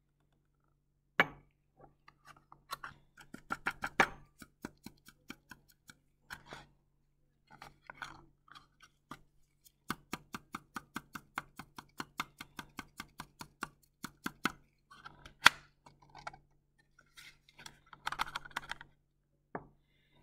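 Light taps and clicks of glassware being handled: a glass flask tapped to work powder into it, in irregular runs and a steadier run of about four taps a second, with a few sharper knocks, the loudest about two thirds of the way through.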